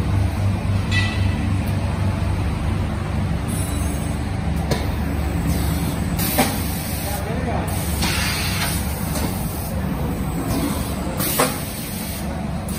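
Powder vertical form-fill-seal packing machine running: a steady low hum broken by short, irregularly spaced hisses of air, with a couple of sharp clicks.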